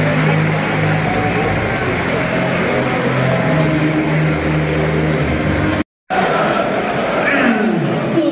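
Football stadium crowd in the stands: a dense murmur of many voices over a steady low hum. After a brief cut near six seconds, the crowd voices come in again with more rise and fall in pitch.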